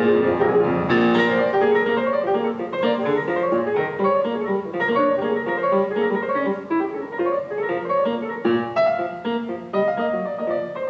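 Jazz piano duet on two grand pianos, a quick, busy stream of short, separate notes.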